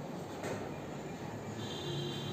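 Whiteboard duster wiping across a whiteboard: a knock as it meets the board about half a second in, then a high squeak near the end as it drags over the surface.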